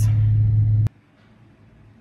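Steady low drone of a car idling, heard from inside the cabin of the stationary car; it cuts off abruptly about a second in, leaving faint room tone.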